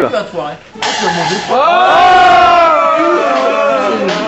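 Men's voices shouting a long, drawn-out 'Ohhh' that rises, holds and slowly falls, a group reaction to someone gulping a flan; just before it, about a second in, a short burst of noise.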